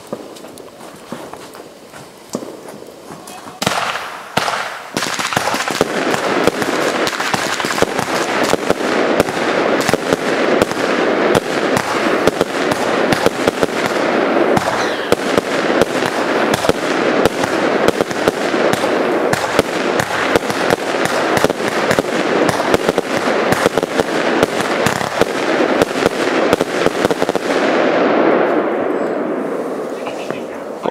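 A 49-shot, 20 mm firework cake (Argento Green Thunder) firing. After a few quieter seconds of fuse, the shots start about four seconds in and go off in rapid succession over a dense crackle for more than twenty seconds. They thin out and stop near the end.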